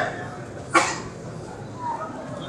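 Murmur of a packed indoor crowd of pilgrims, broken about a third of the way in by one short, sharp, loud sound, like a brief cry or a knock near the microphone.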